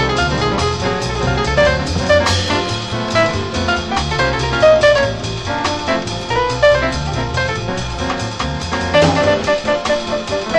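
Jazz band playing a swing tune: piano and bass lines over a steady beat on the drum kit.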